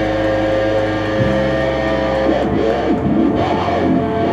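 Live doom/stoner rock band playing electric guitar and bass in long held chords that ring out, the low bass note changing about a second in and again near the end.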